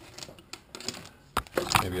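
A few sharp clicks and knocks from the camera and its mount being handled and tilted down by a gloved hand, more of them in the second half.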